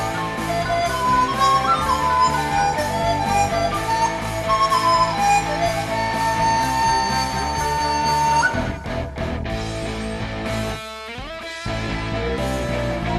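Chinese bamboo flute (dizi) playing a sliding melody over a band backing track with guitar, ending the phrase on a long held note. The band then breaks off briefly, and a rising sweep leads back into the full band near the end.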